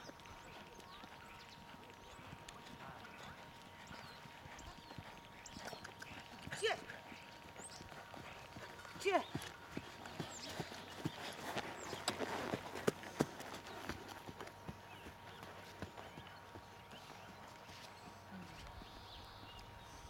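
Hoofbeats of a Friesian mare trotting on a sand arena: soft, irregular thuds and clicks that grow denser and louder about halfway through as the horse comes closest, then fade.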